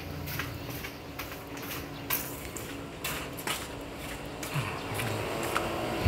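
Irregular light clicks and rattles over a low steady hum.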